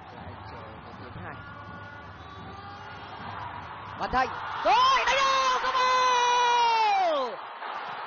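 Stadium crowd noise, then about halfway through a commentator's long, drawn-out excited shout, held for about two and a half seconds and dropping in pitch as it ends, as a Vietnamese attack reaches the goalmouth.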